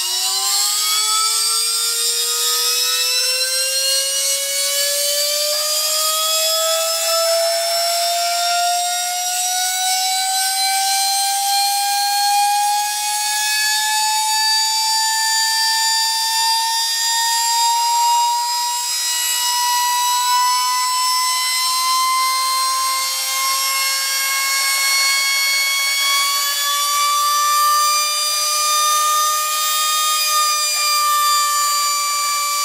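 Small vacuum cleaner motor whining as it is run up on rising voltage, its pitch climbing steeply at first and then more slowly, levelling off near the end. It is being overvolted far past its rating toward about 85,000 RPM.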